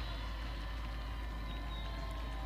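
Steady, low background ambience of an outdoor lacrosse field picked up by the broadcast field microphones: a constant low rumble with faint steady tones, and no distinct events.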